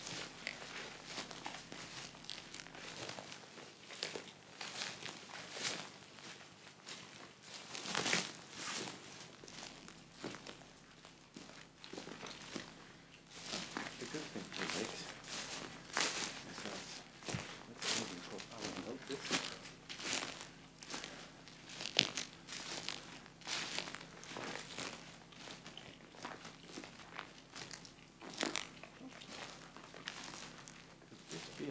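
Footsteps tramping through dry bracken and heather: irregular crunching and rustling steps, with plant stalks snapping and brushing against legs.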